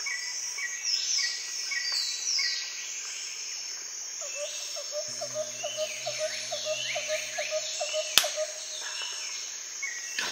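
Birds calling over a steady high insect drone: many short descending whistles and chirps, with one bird repeating a note about four times a second midway. A single sharp click about eight seconds in.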